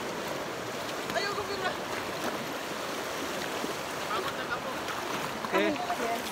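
Steady rush of a river flowing over a rocky bed, with short bursts of people's voices about a second in, around four seconds and near the end.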